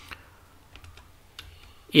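A few faint, separate clicks of computer keys being pressed.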